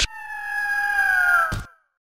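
Logo sound effect: a sharp hit, then an eagle's screech, one long cry that falls slightly in pitch and curls down at its end. A second sharp hit comes about a second and a half in.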